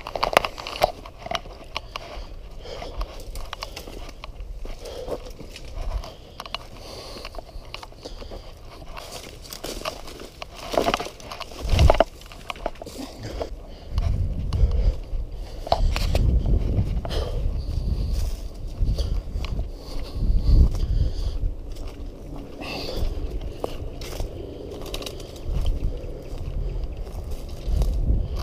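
Footsteps crunching through dry leaf litter, twigs and grass, with irregular crackles and scrapes of brush. Bursts of low rumble come in the middle of the walk.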